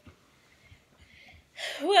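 Mostly quiet, with a faint breathy hiss around the middle, then a woman's voice begins speaking near the end.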